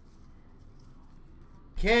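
Quiet room with faint soft rustling of hockey trading cards being handled and shuffled by hand. Near the end a man starts speaking.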